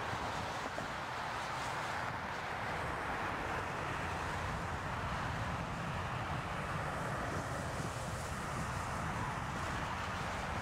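Twin turbofan engines of an Air Canada Embraer E-Jet running at takeoff thrust during its takeoff roll, heard as a steady jet noise. Wind noise on the microphone runs through it.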